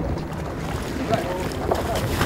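Deck sound aboard a fishing boat: a steady low engine rumble with wind and water noise, and a few brief voices.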